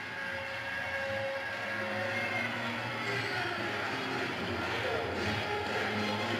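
Ballpark crowd noise: a steady wash of crowd voices and cheering from the stands.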